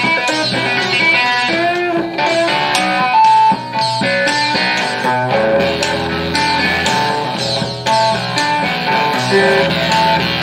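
Squier Classic Vibe 60s Custom Telecaster electric guitar playing a lead solo of picked single notes, with a few bent notes.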